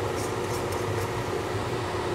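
Steady hum of a running fan, with a low drone and a faint constant tone under an even rushing noise.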